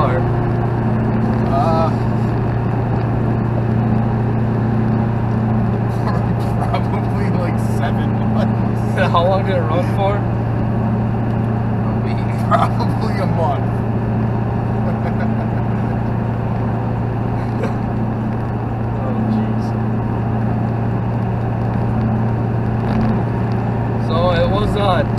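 Steady low drone of a Duramax LB7 6.6-litre V8 turbodiesel pickup cruising at highway speed, heard from inside the cab as engine and road noise together.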